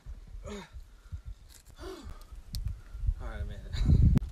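A man gasping and grunting with effort in a few short breaths as he hauls himself up out of a tight crack between boulders, over a low rumble.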